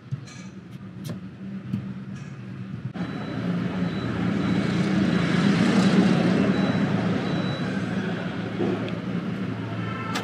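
A motor vehicle going past: its noise swells from about three seconds in, is loudest around six seconds, then slowly fades, over a steady low hum.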